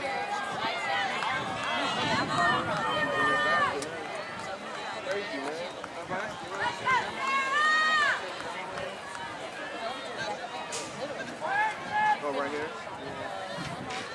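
Spectators shouting to cheer on runners as they pass: scattered calls in bursts a few seconds apart over a steady outdoor background.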